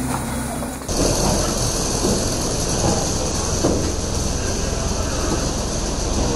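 Steady loud roar of jet aircraft and ground equipment on an airport apron with a high whine above it, cutting in suddenly about a second in as the cabin's low hum gives way to the open aircraft door.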